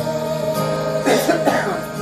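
A congregation's hymn singing with its accompaniment: a held note ends at the start, and someone coughs about a second in while the accompaniment carries on.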